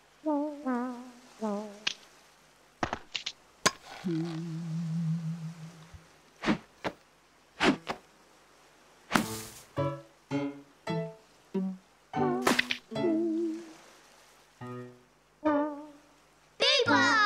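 Comic musical sound effects scored to a mime: short wavering tones, several falling in pitch, one longer held tone about four seconds in, and a scatter of sharp knocks and clicks.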